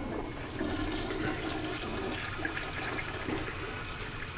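Toilet flushing: a steady rush of water through the bowl.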